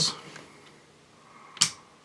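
Ambidextrous thumb safety of a BUL Armory SAS II Ultralight double-stack 1911 pushed up into the safe position: a single sharp, positive metallic click about a second and a half in.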